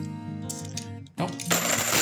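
Background music with long held notes. Near the end, a short, loud rattle of a stack of half-dollar coins being handled and set down.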